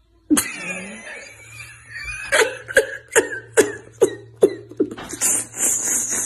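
A man bursting into loud laughter: a sudden outburst, then a run of sharp ha-ha bursts about two or three a second, trailing off into breathy, wheezing laughter near the end.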